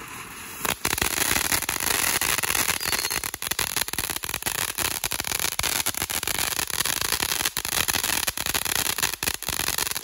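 Shotgun Fireworks 'Tiger Attack' fountain firework burning. Under a second in, a quieter hissing spray jumps to a loud, dense crackle of many rapid pops that keeps going.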